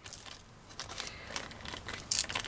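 Small clear plastic zip-lock bag crinkling faintly as it is handled in the fingers.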